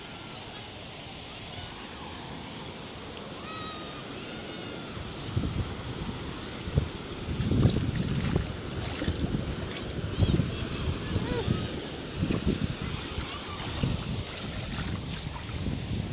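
Surf washing on a shore as a steady hiss, with wind buffeting the microphone in uneven low gusts from about five seconds in.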